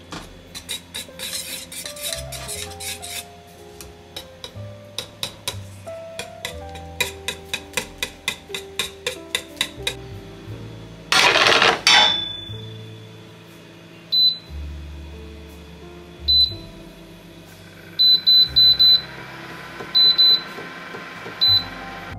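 Background music with held piano-like notes throughout, with a run of quick, evenly spaced clicks in the first half and a loud noise lasting about a second midway. Then an induction cooktop's touch controls give short high beeps: single beeps, then a quick cluster and a pair, as the hob is switched on and its power level set.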